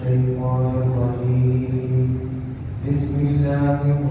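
A man's voice chanting in long, held notes, the pitch stepping up about three seconds in.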